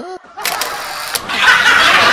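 A short noisy sound effect about half a second in, then loud laughter setting in about a second and a half in and carrying on.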